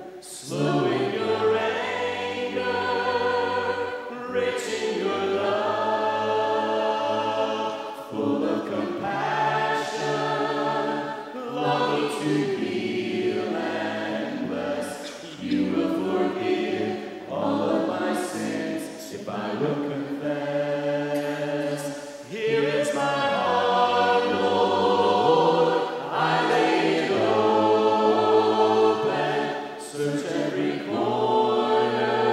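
Mixed men's and women's voices singing a slow hymn a cappella in harmony, in phrases of a few seconds with short breaks between them.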